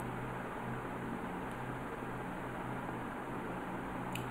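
Steady background hiss with a low, even hum underneath: room tone, with no other sound.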